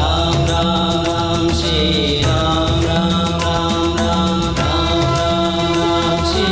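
Devotional background score: chant-like singing in long held notes over a steady low drone, with a regular percussion beat.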